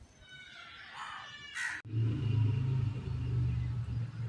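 A high, chirping sound rises near its end and breaks off abruptly under two seconds in. A loud, steady low hum, like an engine running, then carries on to the end.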